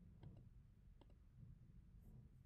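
Near silence: faint room tone with three soft, sharp clicks, two close together early on and one about a second in.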